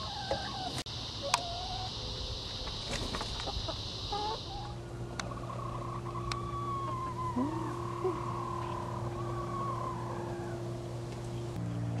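Domestic hens settling on their roost, giving scattered short soft calls and one long wavering call a little past the middle. A steady high insect buzz runs underneath and stops about four and a half seconds in.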